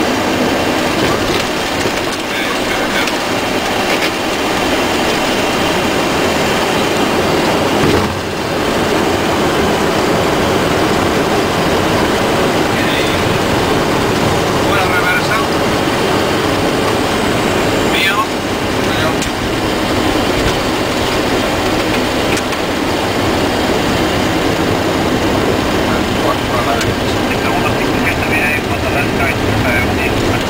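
Steady, loud noise of engines and airflow inside a Boeing 737 cockpit as the jet rolls along the ground after landing. There is a knock about eight seconds in.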